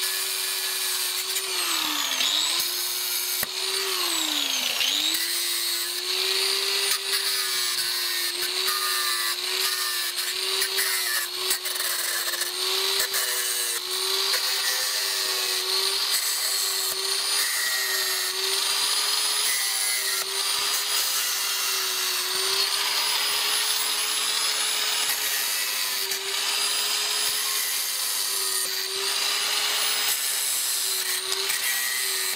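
Small handheld electric grinder with a cutting disc running continuously as it cuts through the wire spokes of a bicycle wheel. Its steady motor whine drops in pitch twice in the first five seconds as the disc bites into the spokes and loads the motor, then holds fairly steady with slight wavering.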